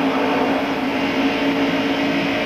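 NASCAR Winston Cup stock car's restrictor-plated V8 running flat out, heard from inside the car through the in-car camera: one steady, unchanging engine note over road and wind noise.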